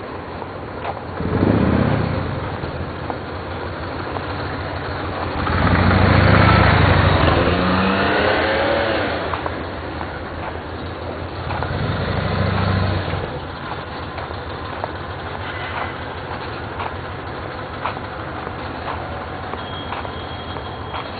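Road traffic: three motor vehicles pass on the street beside the sidewalk, one about a second in, a louder one with a rising and falling engine note a few seconds later, and a third about twelve seconds in, over a steady background of street noise.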